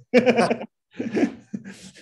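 A man laughing, twice, with short pauses.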